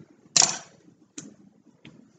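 Sharp clicks and taps from scissors and cut tulle being handled on a stone tabletop. One loud click comes about a third of a second in, then two lighter ones.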